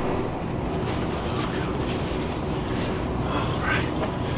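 Steady low background rumble with no distinct events, with a faint brief rustle near the end.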